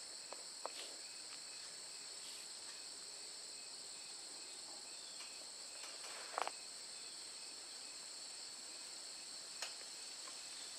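Steady high-pitched chorus of insects chirring without a break. A few light clicks sound over it, the loudest about six and a half seconds in.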